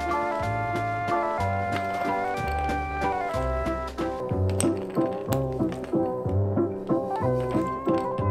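Background music: held melody and chord tones over a bass line with a steady beat.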